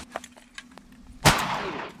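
A single shotgun shot about a second in, one sharp blast with a long fading echo, fired at ducks over a pothole. A sharp click comes just before it, at the start, followed by a few faint ticks.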